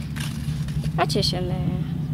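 A brief, level-pitched hummed voice sound about a second and a half in, over a steady low hum, with a few faint clicks of handling.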